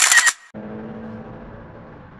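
A brief, loud hissing noise at the very start that cuts off abruptly within half a second. It is followed by the steady low hum of the car's cabin while the car waits at a red light.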